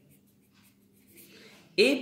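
A pen scratching faintly on notebook paper as a word is handwritten, a little louder in the second half. A man's voice cuts in just before the end.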